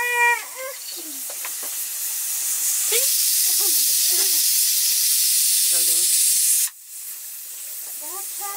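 Steam hissing from an aluminium pressure cooker on a wood fire, building up over a few seconds and then cutting off suddenly near the end.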